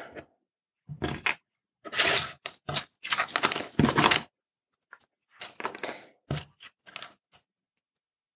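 Black plastic carrier tape of surface-mount LEDs being handled and uncoiled from its reel, crackling and rustling in irregular short bursts.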